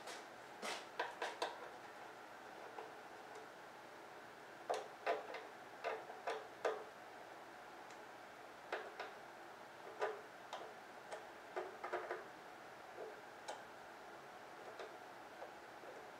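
Light metallic clicks in short irregular bunches, a hand tool working the bolts of a Harley-Davidson V-Rod's front side cover.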